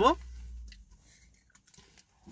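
One spoken word, then a faint low hum and a few soft ticks before it falls nearly quiet.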